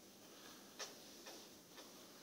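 Near silence: faint steady hiss with three soft, short clicks, the clearest about a second in.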